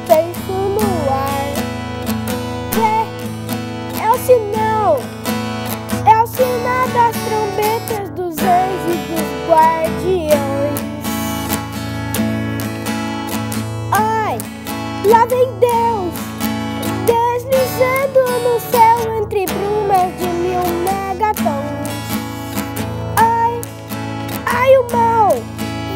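An acoustic guitar strummed in a steady rhythm, with a young boy's singing voice over it.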